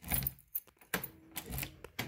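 A bunch of car keys jangling and clicking in the hand, a series of light irregular metallic clicks as the key is brought to the door lock.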